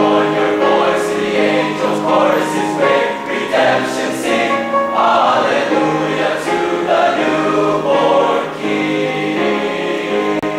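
Male high-school choir singing in harmony, holding full chords and moving together from syllable to syllable.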